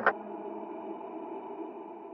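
The last strummed acoustic-guitar chord of a song hits once at the start, then its quiet ring-out slowly fades away.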